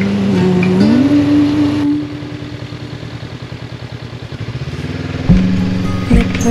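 Motorcycle engine running at low revs with an even pulse. It comes through in the middle while the background music drops away, and the music comes back loudly near the end.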